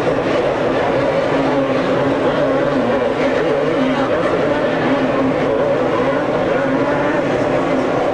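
A pack of two-stroke motocross bikes racing, several engines running hard at once in a steady, dense mix of engine notes.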